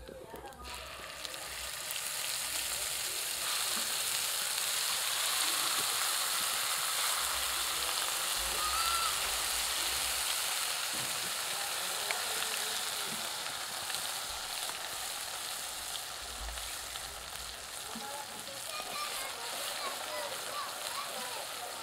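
Green paste sizzling and frying in hot oil in a clay pot: a steady frying hiss that builds over the first two seconds as the paste goes in, then holds while it is stirred.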